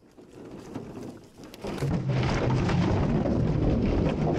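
Water running from a garden hose into large plastic drinking-water bottles, a steady rushing, rumbling splash that starts about two seconds in.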